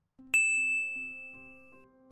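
A single bright chime ding about a third of a second in, ringing out and fading over about a second and a half, with soft background music starting underneath: a transition sound effect as the lesson moves to the next vocabulary slide.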